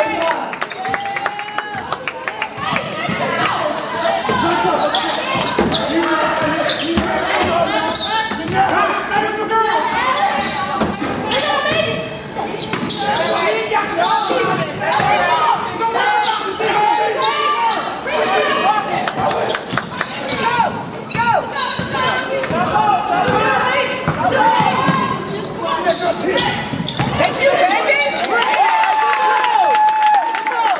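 Basketball game play on a gym's hardwood court: the ball bouncing on the floor, with indistinct shouts and calls from players and the bench throughout.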